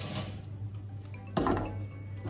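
A baking pan clanks down onto the grate of a gas hob, one sharp knock with a short ring about one and a half seconds in, as the hot cake comes out of the oven.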